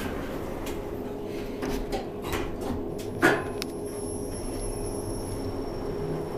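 Kone traction elevator's sliding doors closing with a few clicks and a knock as they shut and lock, then the car starting off, with a faint steady high-pitched whine from about three seconds in over a low steady hum.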